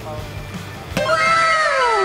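A plastic water bottle flipped onto brick paving, knocking down sharply about a second in, followed by one long 'ooh'-like tone that falls in pitch.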